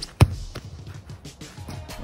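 A football struck hard off a disc cone: one sharp thud about a fifth of a second in, then a fainter knock near the end. Music plays underneath.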